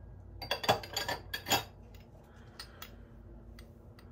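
A glass honey jar, its glass lid and a glass honey dipper clinking and knocking together as they are handled and fitted together. There is a quick cluster of knocks in the first second and a half, then a few light ticks.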